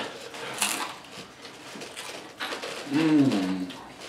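Eating at a table: a few light clicks of cutlery and hands on a plate, then a short hummed vocal sound whose pitch rises and falls, about three seconds in.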